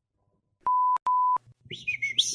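Two short electronic beep tones at a steady pitch of about 1 kHz, back to back with a brief gap. A high chirping sound begins near the end.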